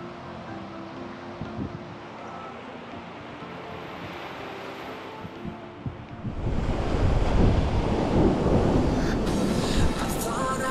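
Surf breaking and washing up a sandy beach, with wind buffeting the microphone. About six seconds in the rushing noise grows much louder and rougher, with a heavy wind rumble, and soft background music plays under the quieter first part.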